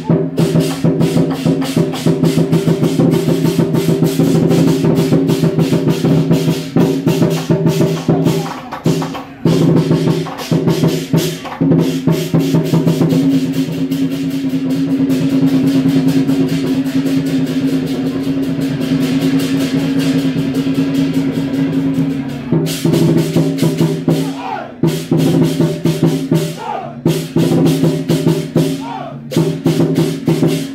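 Southern lion dance percussion: a lion drum beaten rapidly with clashing cymbals and a ringing gong. About midway the strokes blur into a continuous roll under a held ringing tone, then the choppy beat returns.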